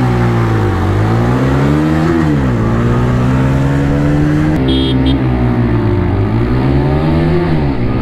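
Bajaj Pulsar N150's single-cylinder engine accelerating hard from a standstill, revs climbing and dropping back at each upshift, with wind rushing past. A little past halfway it cuts to a TVS Apache RTR 160 4V's single-cylinder engine, also pulling hard through the gears.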